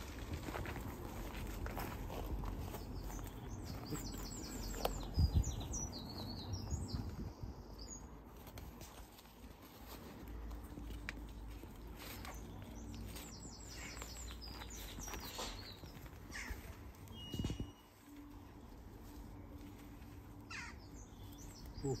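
Small birds singing outdoors: two short, high, twittering phrases about five and thirteen seconds in, with other birds calling faintly. Underneath, low rustling and a couple of soft knocks as hands work soil and plants.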